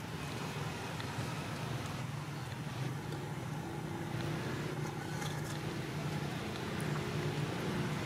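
Steady low rumble of a motor vehicle engine running nearby, with a faint steady hum joining it about halfway through.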